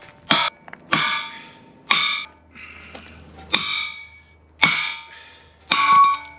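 Hammer blows on thick steel box tubing, knocking off a torch-cut end piece: six sharp metallic clangs, irregularly spaced about a second apart, each ringing briefly.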